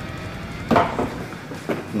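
Handling noise from a cardboard toy box with a clear plastic window: one sharp knock about two-thirds of a second in, then two quick clicks near the end.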